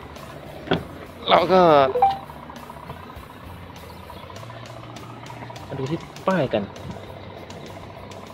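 Steady low engine hum of an idling truck under a man's talk, with one sharp click under a second in as the cab door latch opens.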